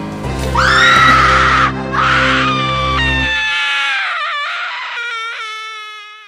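A long, high-pitched scream, held for about a second, breaking off, then resuming and slowly sliding down in pitch as it fades, over a low droning music chord that stops about three and a half seconds in.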